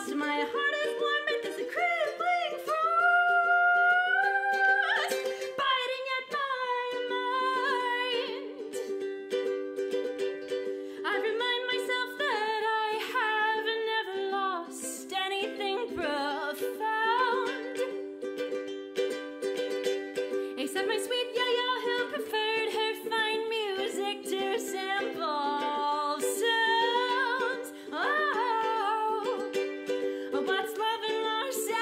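A woman singing with a strummed ukulele, her voice sliding between notes over steady held notes underneath.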